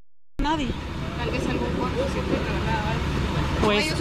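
Sound cuts out completely for a moment at the start, then a steady low vehicle-engine rumble with street noise and faint voices in the background; speech resumes near the end.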